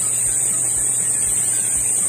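A steady high-pitched whine, unchanging throughout, with a faint low hum beneath it.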